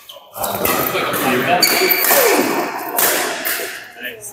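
Badminton play in a large hall: racket strikes on the shuttlecock and court shoes squeaking on the court floor, with voices in the hall.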